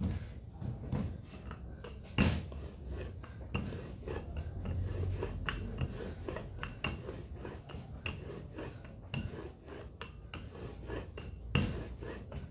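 Rolling pin working laminated Danish dough on a table: a low rumble with scattered knocks and clicks, and one sharper knock about two seconds in.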